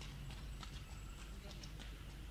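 Chorus of rice-paddy frogs calling: many short, irregular clicking croaks over a steady low rumble.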